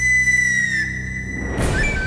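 Dramatic background score: a long held flute-like note over low sustained notes, with a short whoosh about one and a half seconds in.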